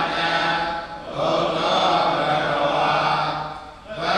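Buddhist paritta chanting in Pali, recited on a steady low pitch in long phrases, with short breaks about a second in and again just before the end.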